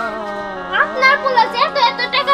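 Speech only: a young woman's voice talking, over a soft background music bed with steady held notes.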